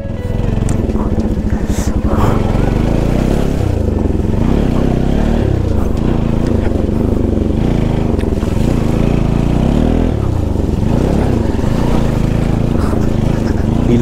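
Bajaj Pulsar NS 200's single-cylinder engine under way, its revs rising and falling over and over as the throttle is worked over a rough dirt road.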